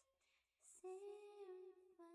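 Faint humming of a slow tune by a single voice. A note dies away at the start, a short breathy hiss comes just after half a second, and a new, lower note is held steadily from just before a second in.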